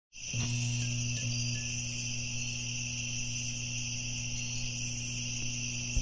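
Steady chirring of crickets over a low, sustained drone, as in a spooky night-time ambience.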